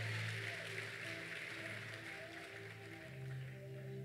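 Soft background music of sustained keyboard chords, the bass note changing about three seconds in, over a faint hiss of hall and crowd noise.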